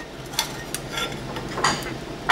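Aluminum plates and a bent aluminum strip clinking and scraping against each other and a metal table as they are set in place by hand: a few light clinks, one ringing briefly about a second in.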